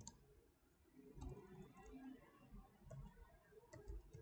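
Faint clicks of computer keyboard keys, a few scattered keystrokes as a word is typed and corrected.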